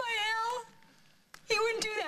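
A woman wailing in grief: a high, wavering cry for about half a second, then after a short pause a second sobbing cry.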